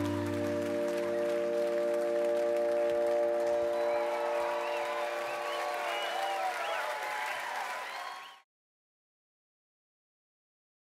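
A band's final held chord rings out, its bass note dropping away about a second in, while the audience applauds and cheers. Everything fades out and cuts to silence about eight seconds in.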